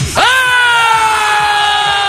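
A person's long, loud celebratory yell: one held cry that jumps up in pitch at the start and then slowly sinks for about two and a half seconds.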